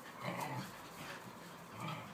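Whippets play-fighting, one giving two short vocal sounds: the first about a quarter-second in, the second near the end.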